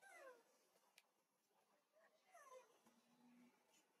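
Newborn baby macaque crying: two short high calls that slide down in pitch, one at the start and another about two seconds in.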